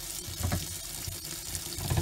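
Kitchen tap running steadily into a stainless steel sink, with a couple of soft low knocks.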